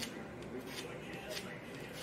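Wire-bristle narrow rougher scraping across the back of a cast plastic deer nose in a few faint, scratchy strokes. The smooth, shiny surface is being roughened so that epoxy will grip it.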